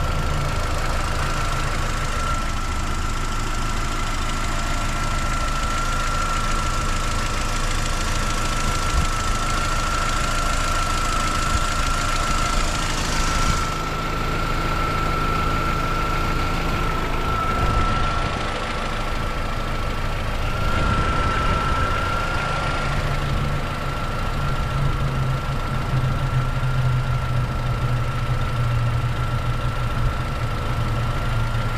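Mini One R50's 1.6-litre four-cylinder petrol engine idling steadily, heard close up under the open bonnet, with a thin steady high whine running through it.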